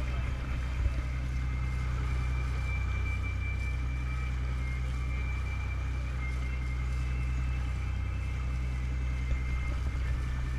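A sportfishing boat's inboard engines running steadily at low speed, a continuous low drone with water rushing along the hull. A faint thin high-pitched whine sits over it from about two seconds in.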